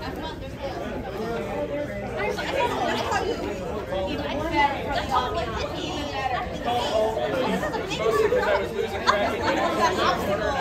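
Overlapping chatter of several people talking at once, with no clear single voice.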